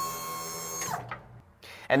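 Dump trailer's electric hydraulic pump motor, run from the wireless remote, a steady whine that winds down in pitch and stops about a second in.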